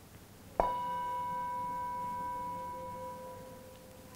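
Metal singing bowl struck once with a mallet about half a second in, then ringing on and slowly fading. It is sounded to open a guided meditation.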